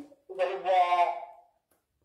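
Speech only: a person's voice for about a second, then silence.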